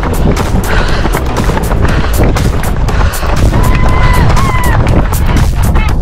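Music with a steady beat, loud, over a heavy low rumble; two short held notes sound a little before and after four seconds in.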